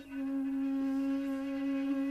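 Saluang, the Minangkabau bamboo flute, holding one long steady note after a brief break right at the start.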